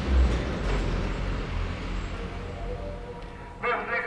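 Low, steady outdoor street noise, a rumble with a hiss above it, with a voice coming in near the end.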